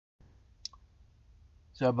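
Faint low room hum with one short sharp click about two-thirds of a second in, then a man's voice starts near the end.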